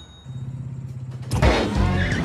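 Small electric cart motor humming steadily as it pulls up. About a second and a half in, a loud hit as music starts.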